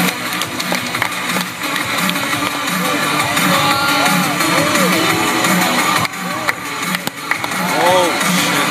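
Music with guitar and a steady beat.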